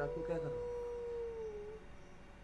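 A dog howling: one long, fairly faint howl that rises at the start, holds a steady note and dips slightly as it ends near the close.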